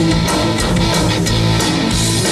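Live rock band playing: strummed electric guitar over bass notes and a steady drum beat.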